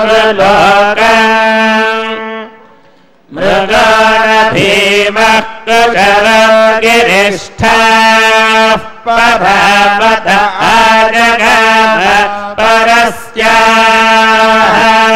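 Male priests chanting Vedic mantras to Indra together on steady reciting tones, with a short pause about three seconds in.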